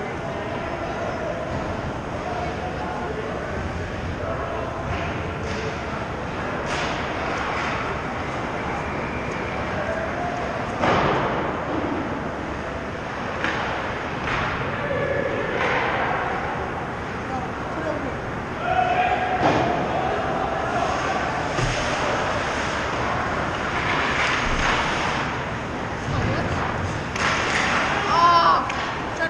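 Indoor ice hockey arena during a youth game: distant voices of players and spectators calling out over a steady echoing rink hum, with occasional sharp thuds that grow more frequent near the end as play comes toward the net.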